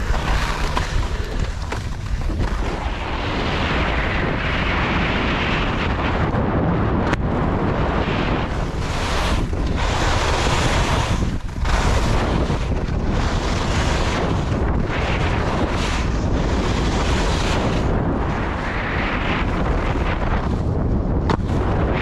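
Wind buffeting the microphone of a body-worn action camera during a fast ski run, with skis hissing and scraping over firm groomed snow. The rush swells and dips with each turn.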